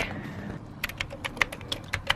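Typing on a MacBook Pro laptop keyboard: a quick, uneven run of key clicks starting about a second in.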